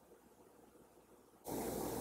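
Near silence for about a second and a half, then a sudden jump to a steady room hiss at an edit cut.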